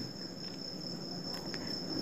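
Faint background noise: a steady high-pitched whine or trill held on one pitch over a low hiss.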